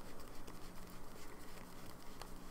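A stack of cardstock ink swatch cards being handled and fanned in the hands: faint papery rustling with many small flicks and clicks as the card edges slide past one another.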